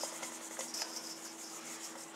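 Dry flour, brown sugar and spice mixture pouring from a bowl onto sliced apples in a metal mixing bowl: a faint, soft hiss with a few small ticks, over a steady low hum.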